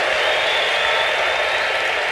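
A large congregation applauding: a steady wash of clapping from many people.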